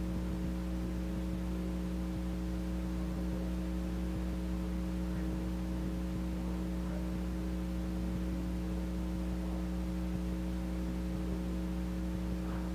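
Steady electrical mains hum, a low buzz with a faint hiss over it, unchanging throughout.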